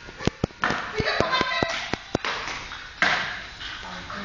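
Table-tennis balls clicking sharply off paddles, tables and floor in irregular ones and twos, with loud voices in the background.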